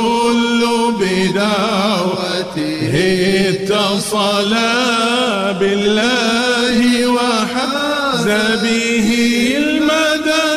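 Arabic devotional chanting (hamd-o-sana): sung praise of God drawn out in long, wavering held notes that run on without a break.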